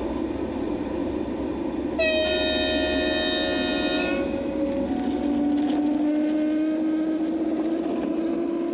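LGB garden-scale model of a Rhaetian Railway Ge 4/4 electric locomotive departing with its train: a steady rumble of the train on the track, a two-tone horn sounded for about two seconds, then a low hum that rises slowly in pitch as the locomotive pulls away.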